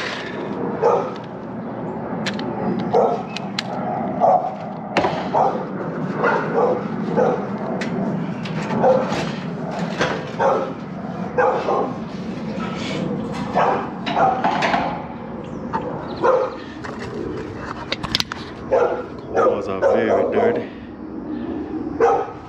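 A dog barking repeatedly, with a few sharp clicks in between.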